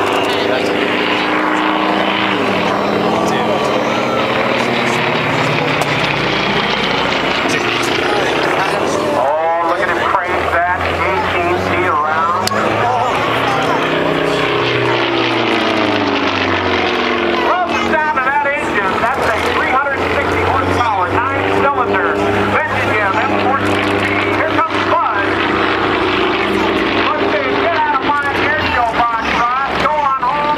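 Propeller aerobatic plane's engine droning overhead during a smoke-trailing display, its pitch sliding up and down as it climbs, turns and dives.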